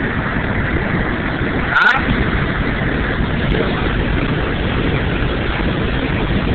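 Steady running noise of a 1982 Chevrolet Silverado pickup on the move, engine and road noise heard from inside the cab, with a brief click about two seconds in.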